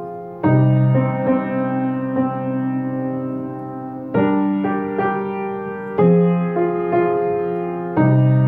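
Kawai piano playing a slow 12-bar blues: full chords with a low bass are struck three times, each left to ring and fade, with lighter right-hand notes picked out between them.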